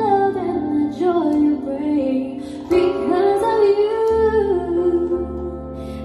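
A woman singing a melody into a microphone, accompanied by held chords on an electronic keyboard. The chord underneath changes about four seconds in.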